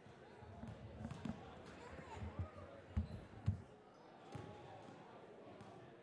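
Basketballs bouncing on a hardwood gym floor: a scatter of irregular low thuds, the two loudest about three seconds in, over faint background chatter in the gym.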